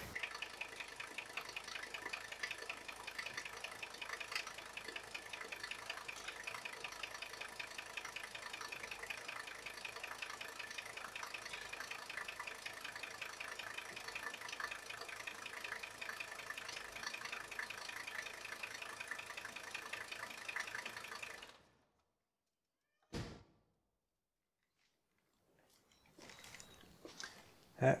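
Mercedes W123's OM617 five-cylinder diesel engine idling with a steady, fast clatter. It stops abruptly about three-quarters of the way through, followed a moment later by a single click.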